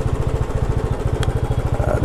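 Royal Enfield Classic 350 single-cylinder engine running at low speed, its exhaust beating in an even, rapid pulse.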